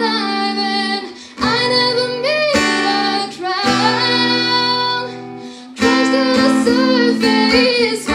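A woman singing with long held, wavering notes while strumming an acoustic guitar, with short breaks between sung phrases.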